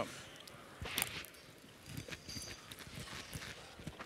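Faint clicks and light knocks of a metal spoon against a ceramic dish as food is scooped up, with one louder knock about a second in, over quiet room noise.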